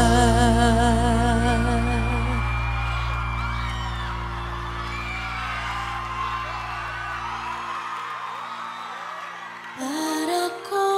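A female singer holds the song's final note with a wide vibrato over a sustained band chord, the voice stopping about two and a half seconds in while the chord rings on and slowly fades out. Underneath, a live audience cheers and whoops.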